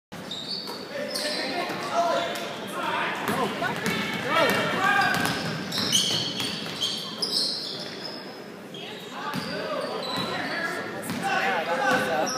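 Indoor basketball game: a basketball dribbling and bouncing on a hardwood court, with short high sneaker squeaks and spectators talking and calling out, echoing in a large gym.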